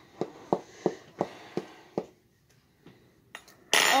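A knife picking and tapping at the stubborn peel-off seal of a baby food container: a run of light clicks about three a second, then a short, louder scrape near the end as the seal starts to give.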